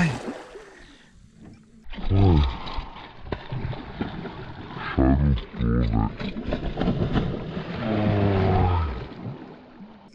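A man groaning and crying out with effort in low, drawn-out sounds, the longest near the end, while fighting a big peacock bass on rod and reel. There is splashing from the fish thrashing at the surface.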